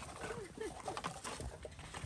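A toddler's faint, high-pitched grunts and babble as she rummages in a plastic kiddie pool, with light knocks of plastic toys being shifted about.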